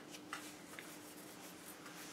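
Quiet room tone with a faint steady hum and a few soft rustles and light clicks from small movements.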